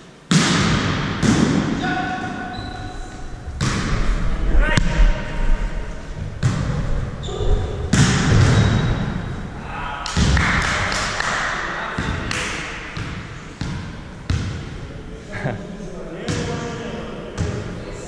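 A volleyball being hit and played again and again, a dozen or more sharp smacks and bounces, each echoing in a large gym hall.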